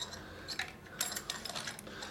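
Small metallic clicks and ticks of an allen key and stainless steel lever handle parts being worked into place at the rose, with a quick run of ticks about a second in.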